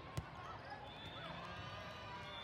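A single sharp thud of a volleyball, a short while after the start, over the steady chatter of voices in a large hall.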